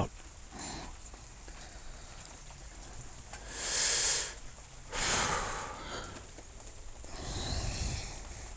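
A person breathing audibly: three breaths of about a second each, the first, near the middle, the loudest.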